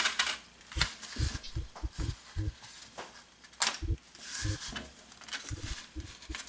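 A pen tracing around a template on a styrofoam sheet: scratchy rubbing strokes with scattered light taps and knocks.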